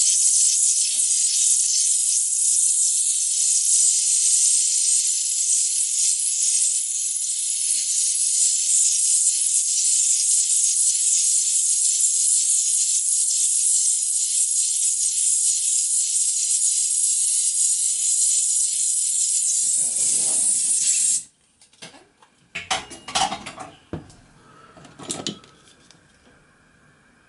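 Gas torch flame hissing steadily while heating a copper boiler end to red hot to anneal it. The hiss cuts off abruptly about 21 seconds in, and a few metallic clanks and knocks follow.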